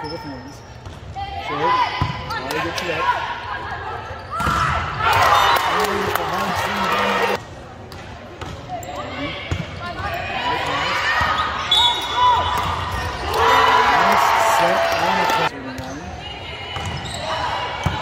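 Indoor volleyball rally in a large gym: players and spectators call out and shout over one another, with sharp thuds of the ball being passed, set and hit. About four and a half seconds in, and again near thirteen and a half seconds, the shouting swells into louder cheering for a few seconds.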